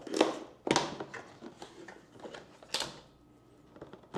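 Cardboard box being handled and opened by hand: a few sharp knocks and clicks of the cardboard, with scraping between them.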